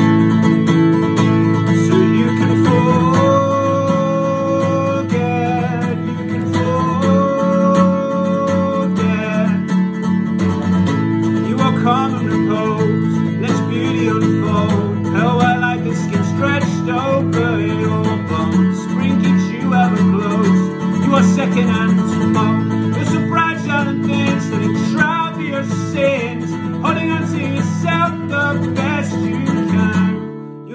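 Steel-string acoustic guitar strummed steadily, with a man singing along.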